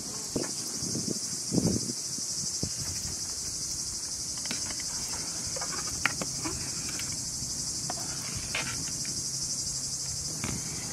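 A steady high chorus of crickets chirping throughout, with a few scattered knocks and clinks from a metal ladle being worked in a steaming cooking pot, the loudest knock about one and a half seconds in.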